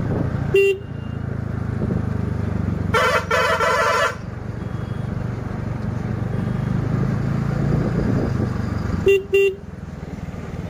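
Motorcycle engine running steadily while riding, with horn sounds over it: one short beep about half a second in, a longer warbling horn blast about three seconds in, and two quick beeps near the end.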